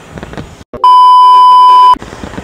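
A single loud, steady electronic beep at one pitch, about a second long. It starts just short of a second in, right after a sudden drop-out of the background, and cuts off abruptly near the end, typical of a bleep edited over speech.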